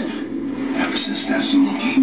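Recorded pop song with a voice singing or rapping, played from a speaker in a small room.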